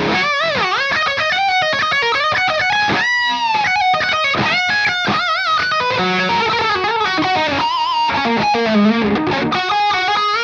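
Gibson Les Paul electric guitar played through the Maestro Ranger Overdrive pedal, set with its knobs at noon, giving a mildly overdriven lead tone. It plays a lead line of sustained notes with wide string bends and vibrato, with a quick upward bend about three seconds in and lower, wavering notes in the second half.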